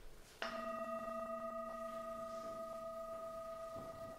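A sanctus bowl (a struck metal singing bowl) struck once about half a second in and left to ring, its several clear tones fading slowly. It is rung at the elevation of the consecrated host.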